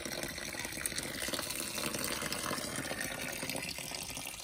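Thin stream of leftover water running steadily from a brass outdoor hose tap whose head has just been loosened: the last water in the pipe draining out after the supply was shut off.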